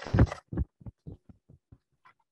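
Handling noise close to a webcam microphone: a bump and rustle as an arm moves past it, then a run of light ticks, about four a second, growing fainter.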